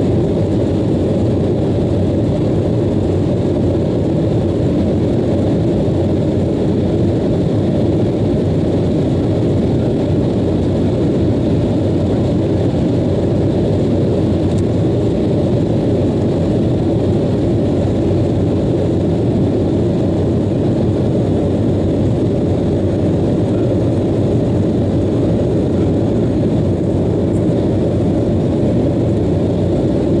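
Steady cabin noise inside an Embraer 190 jet airliner in flight: the wing-mounted GE CF34-10E turbofans and the airflow make an even low rumble with no change in level.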